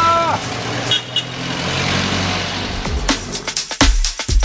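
Busy street traffic noise with a low engine hum and two short high beeps about a second in. About three seconds in, electronic dance music with a heavy drum beat comes in over it.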